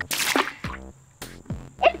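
A wooden stick splashing into swimming-pool water: one short splash right at the start, followed by light background music.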